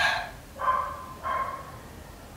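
An animal calling: three short calls, each held on a steady high pitch, the first the loudest.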